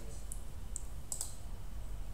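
A few light clicks, about four in the first second and a quarter, from someone working a computer, over a low steady hum.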